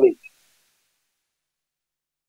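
The last word of a man's speech over a phone line, cut off in the first moment, then dead silence.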